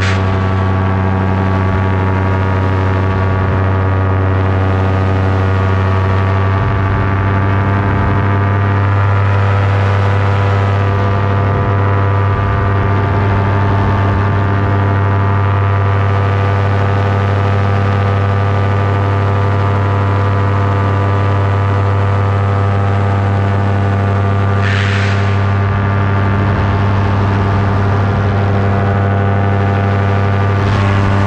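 Paramotor engine and propeller running at a steady cruising throttle, one constant droning tone. A brief rush of wind noise comes about 25 seconds in.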